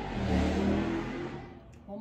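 A rushing noise that swells to a peak about half a second in and fades away by about a second and a half, with a low hum under it.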